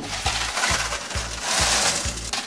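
Bank cash-deposit machine taking in money, a continuous rattling hiss that is loudest near the end, over background music with a steady low beat.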